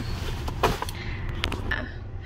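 A nylon rain jacket being handled and rustled, with two short crinkles about half a second and a second and a half in, over a steady low rumble inside a car.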